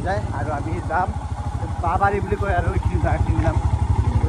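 Engine of a small vehicle running with a rapid, even firing beat, getting a little louder in the second half as the ride goes on. Voices talk over it.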